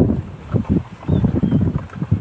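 Sugar syrup being churned in a plastic bucket with a bamboo pole, sloshing low in uneven strokes several times a second, with wind rumbling on the microphone.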